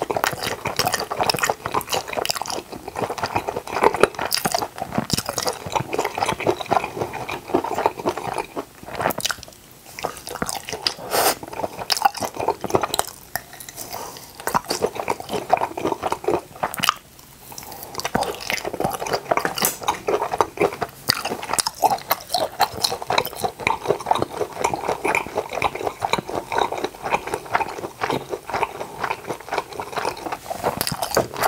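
Close-miked chewing and biting of grilled octopus skewers, a dense run of wet, sticky mouth sounds with small crunches, easing off briefly twice.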